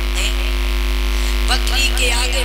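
Loud, steady electrical mains hum in the microphone and sound system, a deep drone with a few fainter steady higher tones over it.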